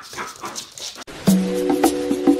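A puppy yips and whimpers in play for about the first second. Then music starts, with held notes and sharp, regular wooden percussion strikes.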